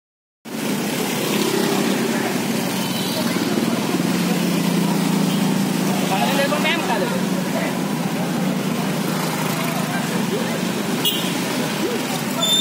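A steady engine drone and street traffic, with bystanders' voices talking faintly over it.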